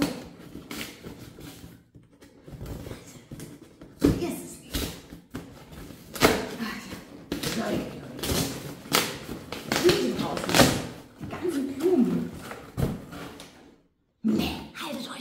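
A cardboard box and its packing being handled and pulled apart, with rustling and a series of sharp knocks and thumps. Low talk comes in and out between them.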